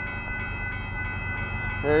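Railroad grade-crossing bell ringing steadily over the low rumble of an approaching Union Pacific freight train.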